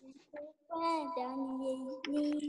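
A child's voice singing long held notes over a video call, the pitch stepping down once partway through, after a couple of short voice sounds at the start.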